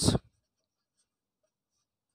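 Very faint scratching of a felt-tip pen writing on paper, following the tail of a spoken word at the very start.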